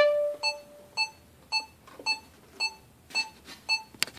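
A violin's last held note fades out, then an electronic metronome beeps steadily at about two beats a second, seven short, high beeps.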